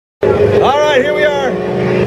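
A man's voice calling out a drawn-out, rising exclamation over a steady hum.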